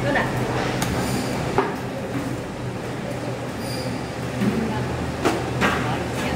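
A knife is chopping through a large king mackerel's neck to take off the head, with a few sharp knocks on the plastic cutting board, two of them close together near the end. A steady machine hum runs underneath.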